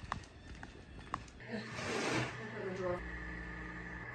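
Faint, indistinct voice with a few light clicks in the first second or so, and a steady faint hum from about a third of the way in.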